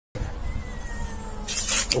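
A cat hisses once, a short sharp hiss near the end, as a defensive warning at a mongoose. Low rumble runs beneath it.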